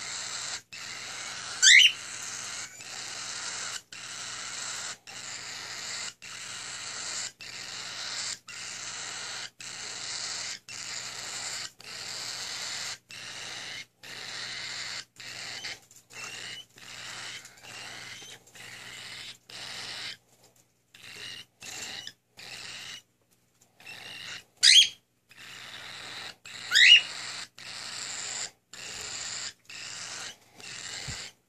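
Cockatiel chicks giving raspy, hissing begging calls in a steady rhythm of about one a second, becoming patchier in the last third. Three loud, sharp chirps that sweep upward in pitch stand out, one near the start and two close together near the end.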